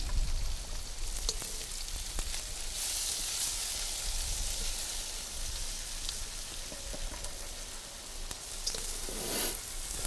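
Onions, ginger and garlic sizzling in a hot wok over a charcoal fire, a steady hiss that swells briefly about three seconds in, with a few light clicks.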